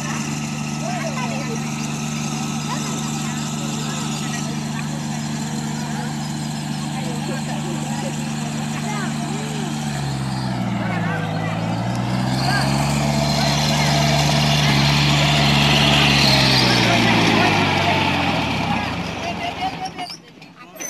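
Sonalika GT20 4WD compact tractor's diesel engine running steadily under load while dragging a large haystack. About halfway through, its pitch dips, then rises and grows louder as the engine labours, easing off again near the end.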